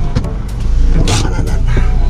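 Car engine running, heard from inside the cabin as a low rumble that swells about half a second in, with several short clicks and knocks.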